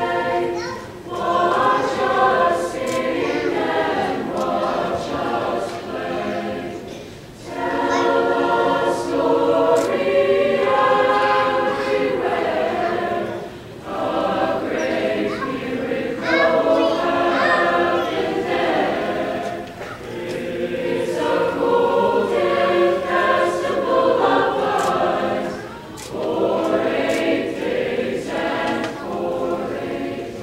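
School chorus singing together in phrases of about six seconds, with brief breaks between them.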